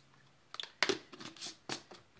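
Handling sounds of protein powder being scooped into a shaker: about five sharp knocks and rustles of the scoop and container, bunched in the second half.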